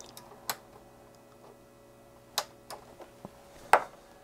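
A few sharp clicks from pressing the front-panel power button of a Rigol MSO5000 oscilloscope to switch it off for a reboot. There are three main clicks, the loudest near the end, with small ticks between them. A faint steady hum runs underneath.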